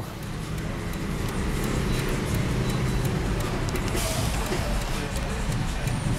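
A car's engine running with steady road noise heard from inside the cabin as the car pulls away from a fuel pump.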